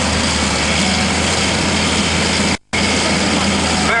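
John Deere tractor's diesel engine running hard and steady under load as it drags a tractor-pulling sled. The sound cuts out completely for a split second about two-thirds of the way through.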